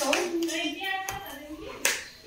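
Faint voices in a small room, with a single sharp smack near the end.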